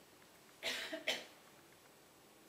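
A person coughing twice, about half a second apart; the second cough is shorter and sharper.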